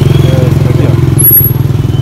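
A motorbike engine idling steadily, its even low firing pulse running on without change. A brief high-pitched whistle sounds a little past halfway.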